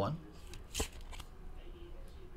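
Baseball trading cards being handled: a short rustle of card against card or plastic a little under a second in, then a fainter tick.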